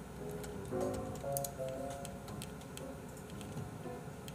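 Soft background music: a light melody of short stepping notes, with faint ticking clicks over it.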